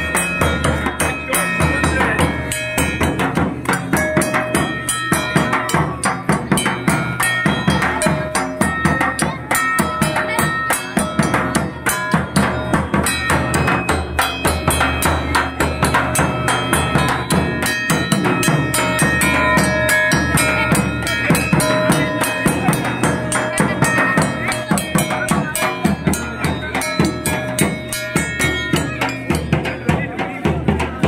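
A large steel-shelled bass drum beaten with a stick in a loud, fast, unbroken rhythm, with other drumming playing along.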